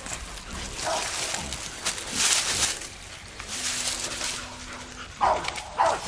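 Beagle barking at a wild boar in brush, with short barks about a second in and two close together near the end. Brush rustles in between.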